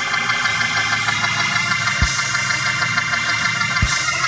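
Organ playing sustained chords, with two low thumps, one about two seconds in and one near the end.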